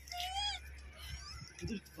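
A short, high-pitched, warbling animal call of about half a second near the start, followed by quiet with a brief low murmur near the end.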